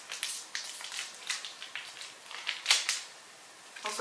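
Crinkly candy-bar wrapper being torn open and scrunched by hand: a run of sharp crackles and rustles, loudest a little under three seconds in.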